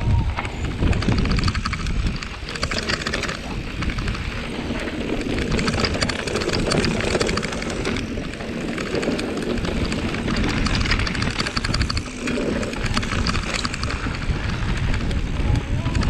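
Mountain bike descending a rough dirt trail: tyres rolling over dirt and the bike rattling over the bumps, with wind rushing over the camera's microphone as a steady loud rumble.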